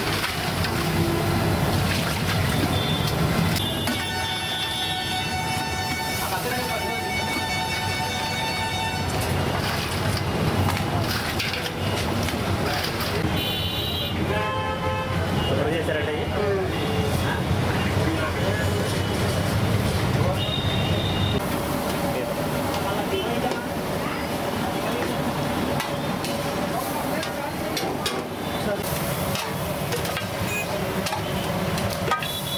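Busy street ambience: vehicle horns honking, one held for several seconds about four seconds in and another shorter one near the middle, over continuous traffic noise and background voices.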